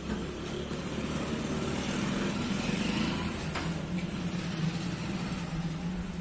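Steady mechanical hum while diesel is pumped from a fuel-station dispenser into a JCB 3DX backhoe loader's tank, its pitch dipping slightly about three and a half seconds in.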